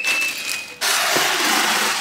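Flat-pack packaging being handled: plastic wrapping rustles, then a steady scraping hiss starts suddenly about a second in and runs for about a second, as of cardboard sliding against cardboard.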